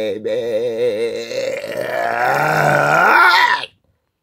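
A voice singing a long, wavering note with heavy vibrato. It swells louder towards the end and cuts off suddenly a little before the end.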